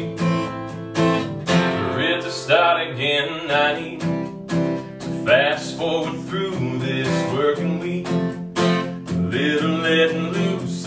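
A dreadnought acoustic guitar strummed in a steady rhythm, with a man singing over it: a solo live song.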